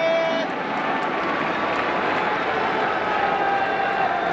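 Crowd noise in a domed baseball stadium: a steady din from many fans in the stands, with a short held tone at the very start.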